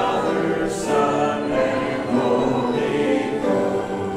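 A small church congregation singing a hymn together, the voices holding each note for about a second before moving to the next.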